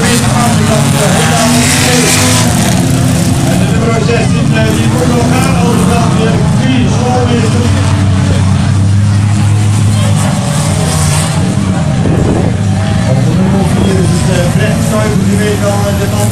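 Several autocross cars racing at once on a dirt track, their engines running hard, with pitches rising and falling as they rev and shift.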